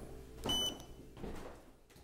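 Footsteps of several people climbing wooden stairs: a few separate thuds, with a brief high squeak about half a second in.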